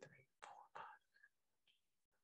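Near silence, with a man counting quietly under his breath in the first second.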